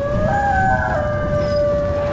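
Edited outro sound effect: a loud low rumble with several held tones over it that slide up at the start and shift about a second in.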